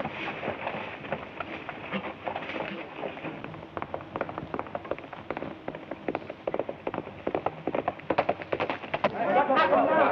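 Horse hoofbeats: an irregular clatter of hoof clops on a dirt road, growing denser in the second half. Near the end a crowd of voices starts up.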